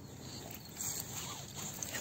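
Faint shuffling and rustling on dry leaf litter as a leashed dog and its handler shift about, with a slightly louder rustle about a second in.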